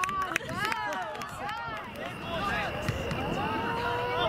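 Soccer players and people along the sideline shouting and calling out during play, several voices overlapping.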